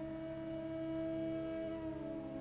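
A sustained, steady droning tone with a stack of even overtones, holding one pitch with a slight shift near the end, over a fainter low hum.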